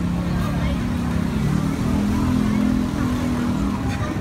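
An engine running steadily close by, a low hum that shifts a little in pitch partway through, over street background noise.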